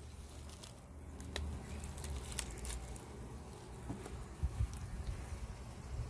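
Faint hum of honeybees at an opened hive, with scattered light clicks and rustles of handling.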